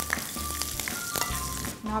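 Hot oil sizzling in a non-stick pan as a tempering of peanuts, curry leaves, green chilli, mustard seeds and split black gram is stirred with a spatula.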